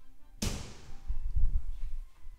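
A framed glass shower door knocks sharply against its metal frame about half a second in, followed by about a second of low, dull thuds.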